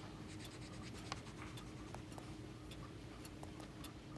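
Faint pencil scratching on paper, irregular short strokes and ticks, over a low steady room hum.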